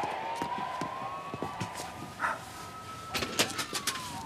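A siren wailing, its pitch rising slowly and starting to fall near the end. Scattered short clicks and taps sound over it, several close together about three seconds in.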